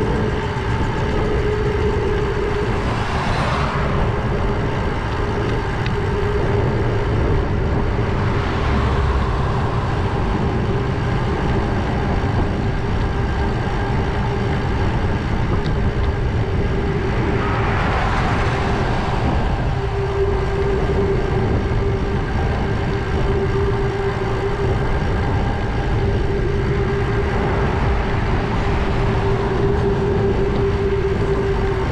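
Wind noise on a GoPro's microphone while cycling along a road, with a steady hum under it. Cars pass by a few times: a swell about three seconds in, a weaker one near nine seconds, and the loudest at about eighteen seconds.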